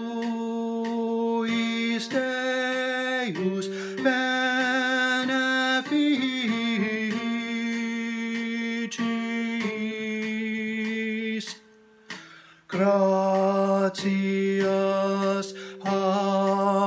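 The tenor part of a choral grace performed as a single melodic line of held notes. There is a break of about a second near the end before the line resumes.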